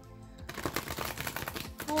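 A deck of oracle cards being shuffled by hand: a quick, dense run of light clicks and flutters that starts about half a second in.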